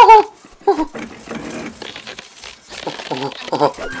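Short dismayed "oh" cries from a cartoon character's voice, with a quieter crackling of breaking ice between them.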